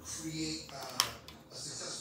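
A girl's voice briefly, then a single sharp click about a second in.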